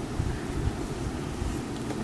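Low, uneven rumble with faint rustling as fabric pieces are handled and moved about close to the camera.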